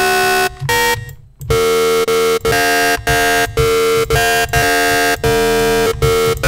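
Serum wavetable synth tone, bright and buzzy with many harmonics, played as the same note over and over, about eight short notes with a brief break about a second in. Its timbre shifts as the wavetable's FFT harmonic bins and phase offsets are edited.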